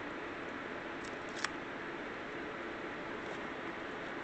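Steady room hiss with no other sound except a single faint tick about a second and a half in.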